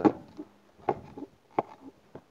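A few light clicks and knocks from the small plastic service hatch of a camper's toilet-cassette compartment being handled and swung open: one about a second in, two more close together near the end.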